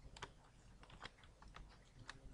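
Faint computer keyboard typing: several separate keystrokes at an uneven pace.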